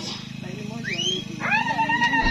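A woman's voice over a PA loudspeaker, with a steady low buzz under it. About a second in there is a short rising cry, and pitched vocal sounds follow near the end.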